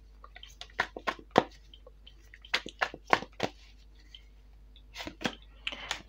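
Tarot cards being handled and drawn from the deck: short clicks and flicks of card stock in a few small clusters as a card is slid off and turned over.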